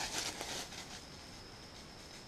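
Brief light rustling in the first half second, then quiet outdoor background with a faint steady high-pitched insect drone.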